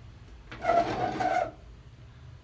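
A scraping rub lasting about a second: the stainless wire-mesh strainer holding a net bag of red-dyed salted eggs being shifted in its basin.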